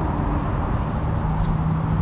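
Steady outdoor background rumble with a constant low hum running under it.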